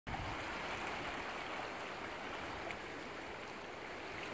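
Small sea waves washing and lapping over shoreline rocks: a steady wash of water.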